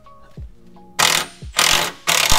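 Cordless impact gun running bolts in, in two short bursts about a second in.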